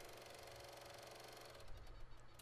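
Near silence: only a faint steady hum, with a slight rise in level near the end.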